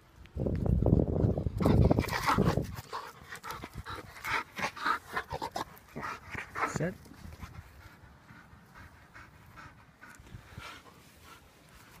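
Belgian Malinois panting hard after fetching, with a loud low rush of wind or handling noise on the microphone for the first couple of seconds.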